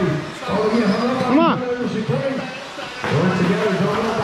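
Indistinct men's voices talking in a large, echoing indoor hall, with one brief sound that rises then falls in pitch about a second and a half in.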